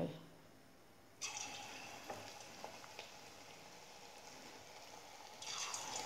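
Onion pakora (piyaji) batter dropped into hot oil, setting off a faint, steady sizzle about a second in; the sizzle grows louder near the end.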